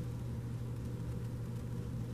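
A steady low hum with a faint hiss behind it.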